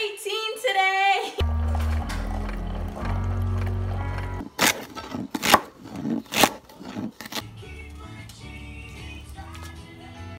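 A girl's voice briefly, then music, then a kitchen knife chopping vegetables on a cutting board: three sharp chops about a second apart, followed by quieter music.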